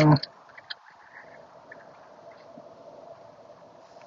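Small solar-powered birdbath fountain bubbling faintly and steadily as water flows over its sunflower head. One faint click comes a little under a second in.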